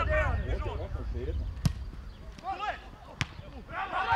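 Two sharp kicks of a football, about a second and a half apart, amid shouting from players and spectators at an open-air match. The shouting swells again near the end.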